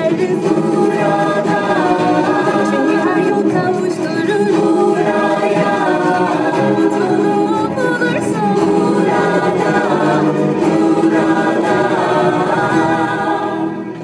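A choir of voices singing over instrumental backing, the closing bars of a song, fading out near the end.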